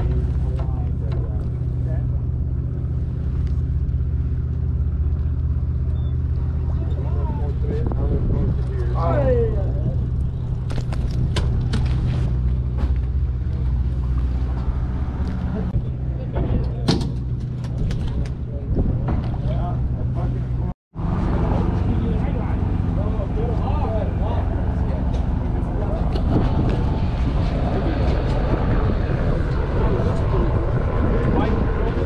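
Fishing boat's engine running steadily with a low hum, with scattered clicks and knocks of fishing tackle and deck handling over it.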